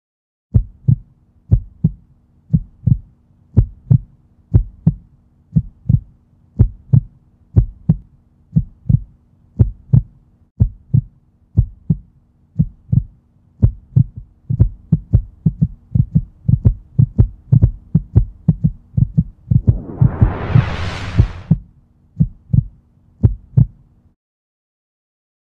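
Heartbeat sound effect: paired lub-dub thumps at about one beat a second over a low steady hum. The beats quicken in the second half, then a whoosh swells up and falls away about twenty seconds in, and two slower beats follow.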